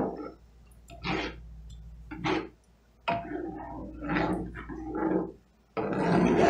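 A utensil stirring and scraping gravy in a cast iron skillet, in several short strokes with brief pauses between them.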